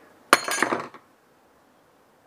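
A sharp metallic clink about a third of a second in, followed by a short ringing rattle of metal that dies away within about half a second.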